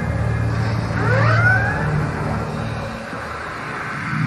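Electronic stage music: a steady low drone, with a few rising, siren-like pitch glides about a second in, slowly fading toward the end.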